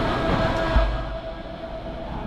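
Dockside crane hoist running: a steady whine through the first second, a heavy low thud about three-quarters of a second in, then a lower mechanical rumble.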